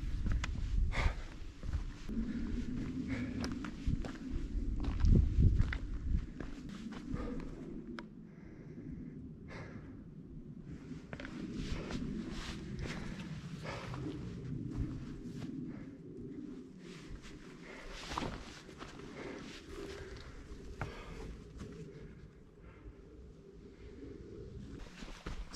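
Footsteps of a walker on a rocky, stony mountain path, irregular steps over a low rumble, louder during the first six seconds and quieter afterwards.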